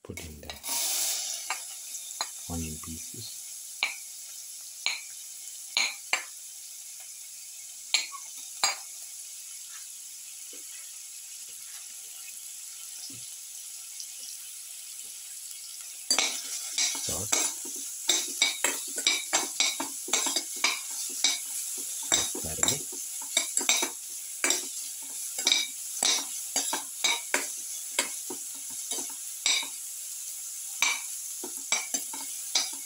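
Sliced shallots hitting hot ghee in a stainless steel pan and sizzling steadily. About halfway through a spoon starts stirring them, scraping and clinking rapidly against the pan over a louder sizzle.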